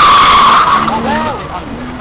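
A BMW's tyres squealing as the car skids past, one loud steady squeal that fades out about a second in. Voices follow it.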